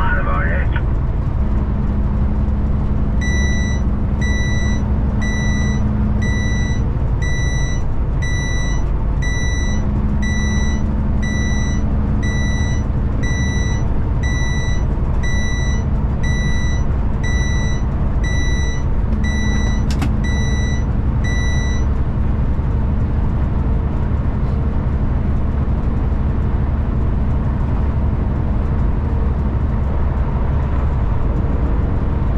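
Cab of a Kenworth K200 truck driving at highway speed, with steady engine and road noise. A high electronic warning beep repeats about one and a half times a second for close to twenty seconds, and a single sharp click comes near the end of the beeping.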